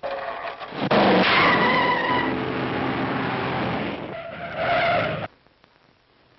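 Hot-rod car with a full race cam and high-compression heads taking off hard: the engine revs up near the start while the tyres squeal. The sound cuts off abruptly about five seconds in.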